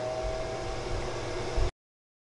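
NuWave countertop convection oven running just after being started, its fan blowing steadily with a faint whine. A brief low thump comes near the end, then the sound cuts off suddenly.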